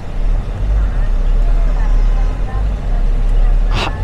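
A car on the move, heard from inside: a steady low rumble of engine and road noise.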